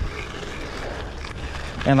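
Bicycle gravel tyres rolling over a damp gravel road, a steady noise, with wind rumbling on the microphone.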